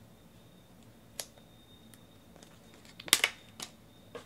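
Trading cards being handled and set down on a table, heard as a few sharp clicks and taps. There is a single click about a second in and the loudest cluster of clicks about three seconds in.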